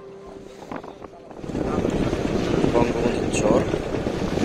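Noise of a trawler under way on open water: wind on the microphone and rushing water. It comes in loudly about a second and a half in, with faint voices in it.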